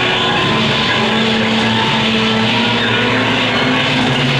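Live psychedelic rock band playing a loud, dense drone: long held notes over a thick wash of distorted noise, with violin and electric guitar on stage.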